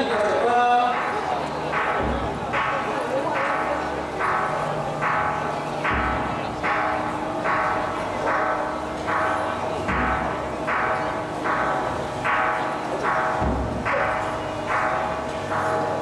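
Metal percussion of a temple procession struck in a steady rhythm, about two to three ringing strokes a second, with a deep thud every few seconds, over crowd noise.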